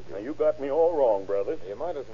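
Male voices in dialogue from an old radio drama recording, with a steady low hum underneath.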